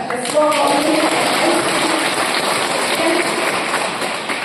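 Audience applauding: a dense, steady clapping that starts abruptly and stays loud throughout, with a few faint voices under it.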